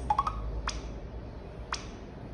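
A face recognition access terminal being tapped on its touchscreen: a quick rising electronic chirp at the start, then two single sharp clicks about a second apart, over a steady low hum.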